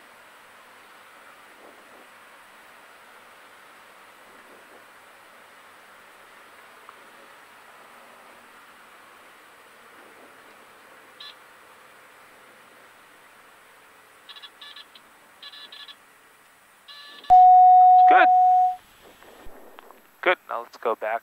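Faint steady cabin noise of a single-engine airplane rolling on the runway, heard through the headset intercom with its low drone filtered out. Near the end a loud steady beep-like tone sounds for about a second and a half.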